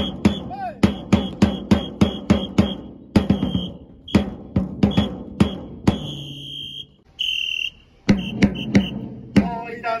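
A baseball cheering section's drum beaten in a fast, steady rhythm of about three to four strokes a second. About six seconds in the drumming pauses for two long, high whistle blasts, then starts again. Near the end a tune begins over the drum.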